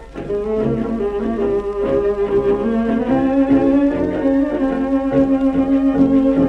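Orchestra playing a tango, from a 1929 recording: a melody in long held notes over a steady beat.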